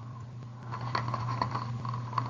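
A few faint, light clicks and taps from hands handling small beading supplies, over a steady low hum.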